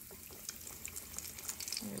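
A breaded chicken drumstick sizzling in hot frying oil just after being lowered in, with a dense, fine crackle.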